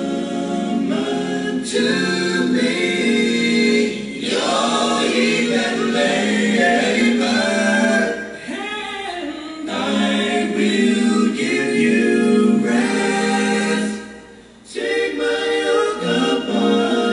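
A choir singing a hymn without instruments, in long sustained phrases with a brief break for breath near the end.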